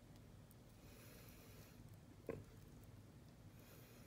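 Near silence: room tone, with one faint short sound a little past halfway.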